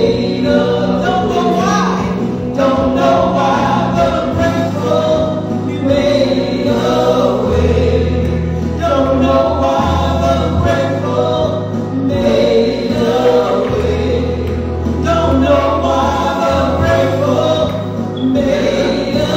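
A recorded gospel song: a choir singing over a band with held bass notes that change every couple of seconds.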